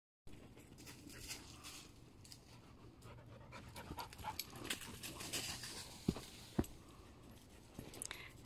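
A dog panting close by, faint, with light rustling and crunching of footsteps on a leaf-strewn trail and two sharp clicks about six seconds in.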